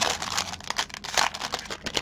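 Thin plastic bag crinkling as hands handle it and work it open, with a louder rustle about a second in.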